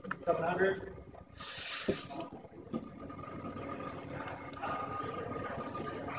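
Steady hum of lab machinery with a thin high whine while a bridge is slowly loaded in a testing frame; a short, sharp hiss cuts in about a second and a half in. Faint voices in the first second.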